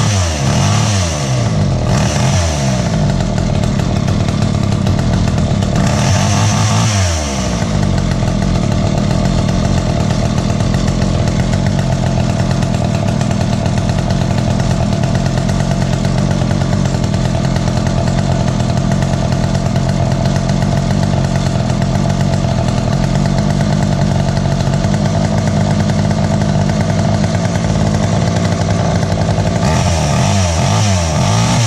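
Poulan 2000 two-stroke chainsaw engine running after a carburetor rebuild. It revs up and falls back a few times in the first seven seconds or so, then settles into a steady idle as it warms up.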